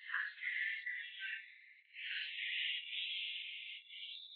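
Hairdressing scissors and comb working through straight hair on a mannequin head: two long stretches of hissing, rasping noise with a single sharp click a little past halfway.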